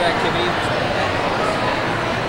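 Steady background chatter of many voices in a large, echoing room, with a word of speech at the start.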